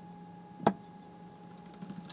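A faint steady electrical-sounding hum with a single sharp click or knock a little under a second in.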